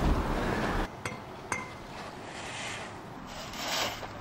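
Dry palm frond swept across rough pavement in scraping strokes, with two light clinks a little after a second in.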